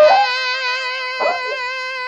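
Post-punk art rock recording: a long held, wavering note with two percussive hits, one at the start and one just over a second in.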